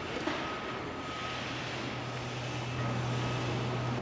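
Distant engine hum over a steady outdoor hiss, the hum growing a little louder in the second half, with one light click just after the start.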